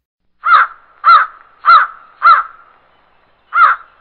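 A bird's loud, harsh call, repeated four times about half a second apart, then once more after a pause near the end.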